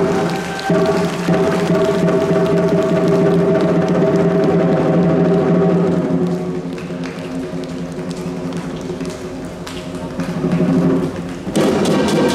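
Southern lion dance percussion (large lion drum with cymbals and gong) playing continuously to accompany a pole routine. It drops to a softer passage a little past halfway and builds back up near the end.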